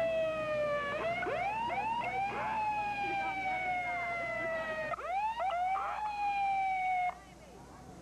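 A vehicle siren sounding: it swoops up sharply, then holds a slowly falling wail broken by repeated quick upward whoops, and cuts off abruptly about seven seconds in.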